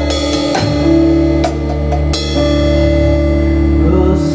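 Acoustic drum kit playing with a band in a slow worship song over held chords. There are a few spaced drum strikes, and a cymbal crash about two seconds in rings on.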